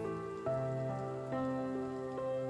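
Soft background music of sustained, slowly changing chords, with a new chord about half a second in and another about a second and a half in.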